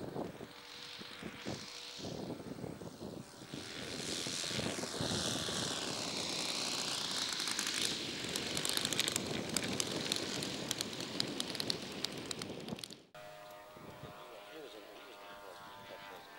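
Engine and propeller of a large radio-controlled scale Piper Cub model in flight, the note sweeping up and down in pitch as it flies past. It grows louder into a low pass before cutting off abruptly, leaving a quieter steady hum.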